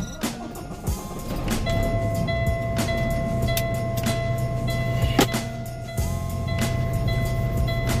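Truck diesel engine cranked and starting about a second in, then idling with a steady low rumble. It is started after the air has been pumped down, to build air brake pressure back up.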